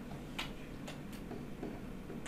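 A few faint, irregular ticks of a stylus tip tapping a tablet screen while writing.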